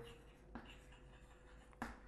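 Faint chalk scratching and tapping on a chalkboard as a line of writing is finished, with a short click near the end.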